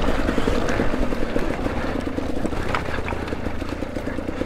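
KTM EXC 250 TPI's single-cylinder, fuel-injected two-stroke engine running steadily under throttle as the dirt bike rides up a muddy trail, with a few sharp clicks over the engine.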